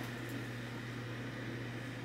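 Steady low hum with a faint even hiss: quiet room tone with no distinct events.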